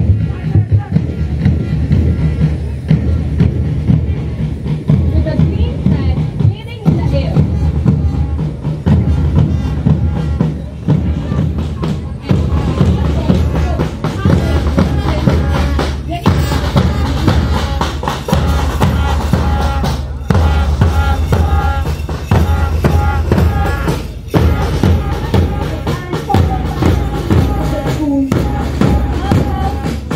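Marching music from a school drum band: bass and side drums keep a steady march beat under a melody.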